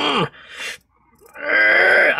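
A man groaning with effort in two held, strained notes: the first ends about a quarter second in, and after a breath and a short pause the second begins near the end. He is straining to bend his wrist back far enough to press the watch's buttons.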